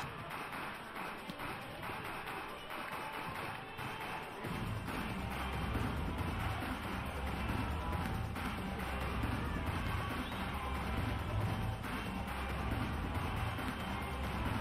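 Indoor sports-arena crowd noise. About four and a half seconds in, a steady, pulsing low drumbeat of cheering music joins it and carries on.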